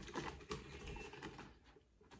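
Faint, irregular plastic clicks and rattles from a Traxxas TRX-4 Ford Bronco RC truck being picked up and handled, with one sharper click about half a second in.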